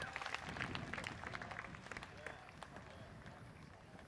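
Audience applause dying away into scattered claps, with faint crowd voices underneath.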